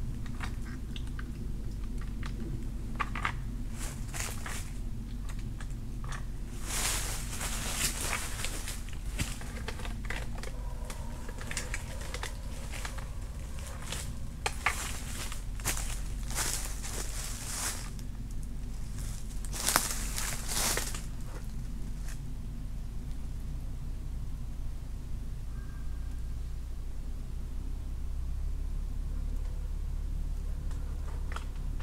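Footsteps crunching through dry fallen leaves in a few separate spells, with rustling and handling noises in between, over a steady low rumble.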